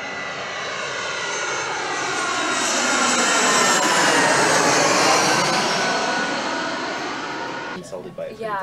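Jet airliner flying overhead: its engine noise swells to a peak about halfway through, then fades as it passes.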